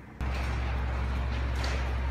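A steady low hum under an even wash of background noise, cutting in abruptly a moment in.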